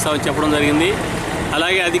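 A man speaking in Telugu, talking steadily in an interview.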